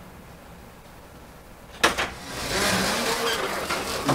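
An interior door's knob latch clicks twice about halfway through, then the door is pushed open with a louder rush of movement noise.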